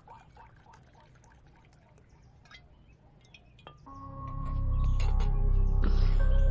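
Liquor glugging out of a bottle as it is poured, fading away within the first second, followed by a quiet stretch with a few faint clicks. About four seconds in, film background music with a deep bass swells up and becomes the loudest sound.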